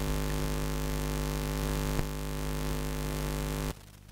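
A steady electronic drone of several held tones, unchanging in pitch, that cuts off suddenly near the end.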